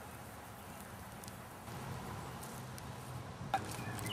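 Quiet background with a few faint crackles from a wood fire of logs and sticks burning in a pit, over a low steady hum; a sharp click near the end.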